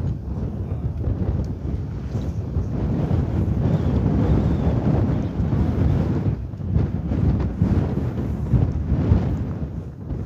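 Wind buffeting the microphone: a loud, low, gusty rumble that swells and eases.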